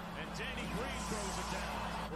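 Basketball game broadcast playing quietly: a commentator's voice and arena sound over a steady low hum.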